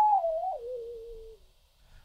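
Computer-generated sine-wave tone from a p5.js oscillator, its pitch and loudness set by the mouse position. It glides down in wavering steps from a high note to a lower one while fading, and dies out about one and a half seconds in as the mouse reaches the silent left edge.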